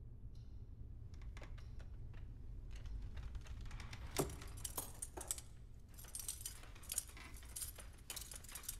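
Metal pieces jangling and clinking in short, irregular bursts, sparse at first and busier from about three seconds in, over a low steady hum.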